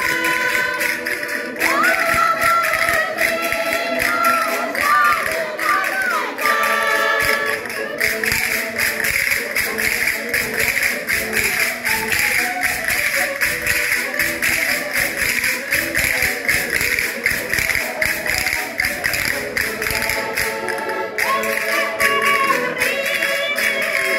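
Portuguese folk music: women singing to a diatonic button accordion, with wooden castanets clacking the beat. About eight seconds in the voices stop and the accordion and castanets carry on alone, with a rapid, even clatter; the singing comes back near the end.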